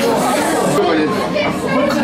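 Chatter of many overlapping voices talking at once, a steady hubbub of people in a busy eatery.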